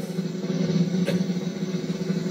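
Steady low background music, a sustained held tone with no beat, with a faint click about a second in.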